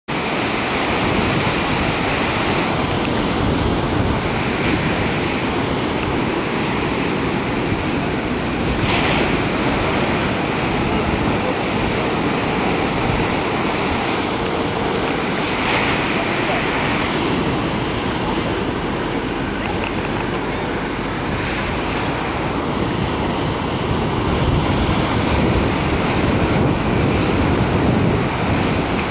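Ocean surf breaking and washing onto a beach: a steady rushing roar that swells a little now and then, with wind buffeting the microphone.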